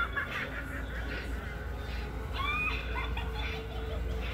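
Animated Halloween magic broom giving short, high-pitched 'eh, eh, eh' laughing calls about two and a half seconds in, over a low steady hum.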